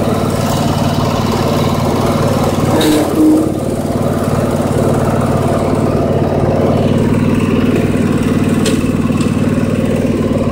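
A small engine idling steadily, with a brief pitched sound about three seconds in.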